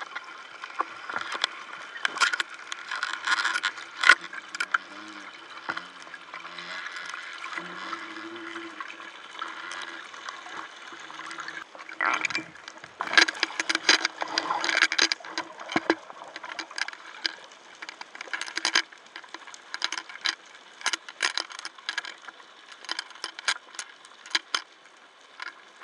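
Underwater noise picked up through an action camera's waterproof housing: a steady watery hiss with many irregular sharp clicks and knocks, thickest about halfway through.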